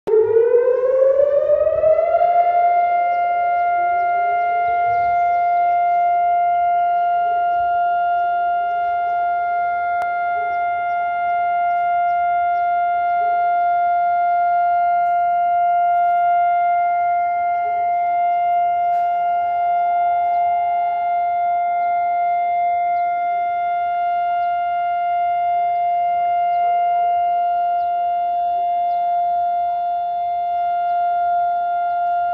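Civil-defence siren winding up in pitch over its first two seconds, then holding one steady, loud tone: the steady two-minute siren sounded across Israel on national memorial days. About halfway through, fainter sirens at slightly different pitches join in.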